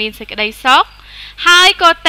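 A woman's voice narrating steadily, with a brief pause about a second in.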